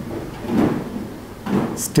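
A pen writing on paper, with two short bursts of scratching strokes. A voice starts speaking right at the end.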